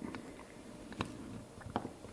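Faint handling noise with a few small, sharp clicks, about a second in and again near the end, as small plastic and electronic parts are pressed into an H0 model locomotive's plastic chassis.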